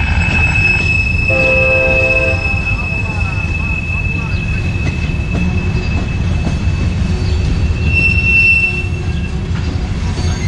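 Gondola cars of a freight train rolling past with a steady low rumble of wheels on rail and a high, steady wheel squeal that swells near the end. A train horn sounds briefly about a second and a half in.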